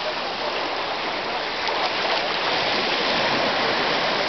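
Shallow surf washing over sand at the water's edge: a steady rushing of water.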